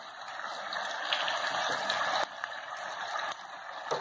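Chicken pieces cooking in a pan of caramelized sugar, a steady sizzling hiss that drops a little twice in the second half.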